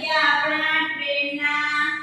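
A young female voice in a drawn-out sing-song, holding long, steady notes with a slight dip in pitch partway through.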